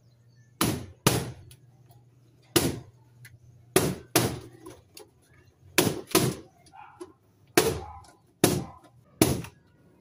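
Latex party balloons popped one after another with a safety pin on the end of a stick: about ten sharp bangs at uneven intervals, some in quick pairs.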